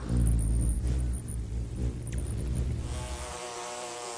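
A deep low rumble for about three seconds, then the steady wing buzz of a flying bumblebee comes in near the end.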